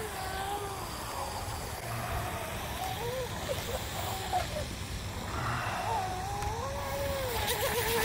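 Whine of the small Hobbywing 2030 brushless motor in a 12-inch RC micro hydroplane running on the water, its pitch rising and falling with the throttle through the laps.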